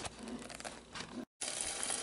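Light clicks, then after a sudden brief cut-out, raw beaten egg starting to sizzle in a hot nonstick frying pan inside a silicone egg ring.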